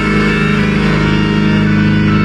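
Live heavy metal band on a loud PA, distorted electric guitars holding one sustained chord with a deep, steady drone and no drum hits.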